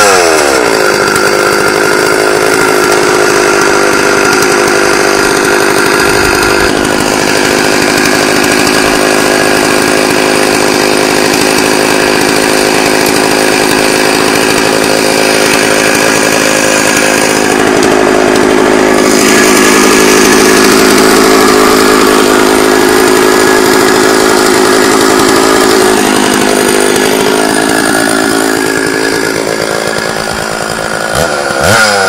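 Stihl two-stroke chainsaw running at high revs under load, ripping lengthwise along a log to mill it into lumber. The engine note holds steady, dipping briefly and recovering near the end.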